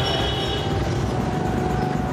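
Busy street traffic of motorbikes and scooters, a dense steady noise of small engines running, with a high steady tone that stops a little way in.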